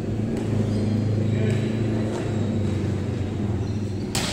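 A steady low hum from a running motor, with faint voices behind it.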